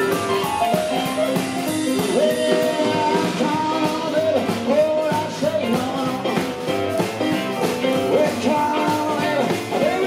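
Live rock 'n' roll band playing, with upright double bass and piano under a lead melody line that slides between notes, over a steady beat.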